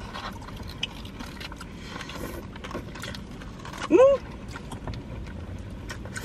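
Close-miked eating: a Crunchwrap with corn chips inside being chewed, a string of small crunches and mouth clicks. A hummed 'mm' of enjoyment about four seconds in, rising then falling in pitch, is the loudest sound.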